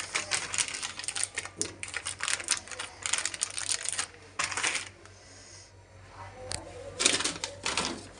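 Plastic-foil pouches being handled and crinkled on a stone counter, in bursts of quick crackling with a quieter pause about five seconds in before the crackling resumes.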